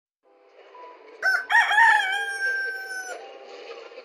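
A rooster crowing once: a short note about a second in, then one long held call that ends about three seconds in.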